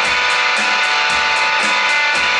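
Electric guitar playing sustained notes over a drum machine beat, with evenly spaced ticks about four times a second and a low kick about twice a second.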